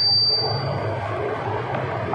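Steady background hum and hiss with no speech, and a faint high whistle that fades out about a second in.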